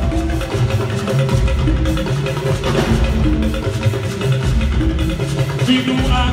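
Live praise music from a church band: drums keeping a steady beat under a stepping bass line and sustained keyboard-like notes, with the choir's voices coming in near the end.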